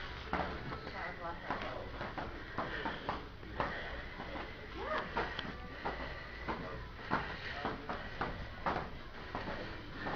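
Heavy battle ropes slapping the gym floor in repeated waves, about two to three uneven slaps a second.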